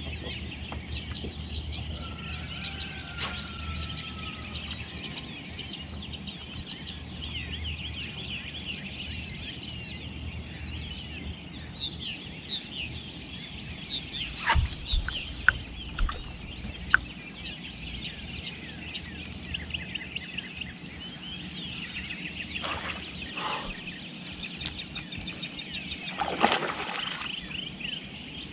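Many birds chirping and calling together in a dense chorus, over a steady high-pitched hum and a low hum. A few sharp clicks or knocks come about halfway through.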